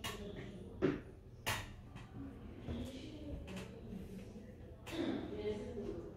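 Quiet handling noise while a wire-tip pyrography pen works over a wooden panel: a handful of soft clicks and knocks, the loudest about a second in, over a faint low murmur.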